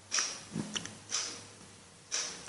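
Quiet breathing or sniffing from a seated man at the microphone during a pause in speech: short hissy puffs about once a second, each fading quickly, with a few faint clicks.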